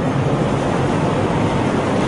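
Steady hiss and low rumble of the recording's background noise, with no voice over it.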